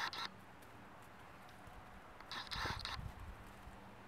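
Kitten's claws scrabbling and scratching on a woven basket as it climbs: a brief burst right at the start and a longer one about two and a half seconds in, with a few soft thumps.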